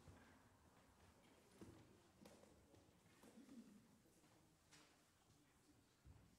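Near silence: faint room tone with a few soft footsteps and shuffles.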